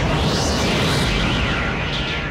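Magic-spell sound effect for a fired energy blast: a continuous rumbling, hissing blast with sweeping tones that rise and fall again and again, laid over background music.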